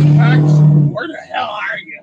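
A man's loud, drawn-out vocal sound, held at a low pitch with a few small steps up and down, acting out his reaction to being woken by his alarm; it stops about a second in, followed by softer voices.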